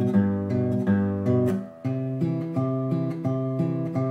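Taylor acoustic guitar fingerpicked in Piedmont blues style: a steady alternating bass line picked with the thumb, two low notes swapping back and forth, moving to a new chord about two seconds in.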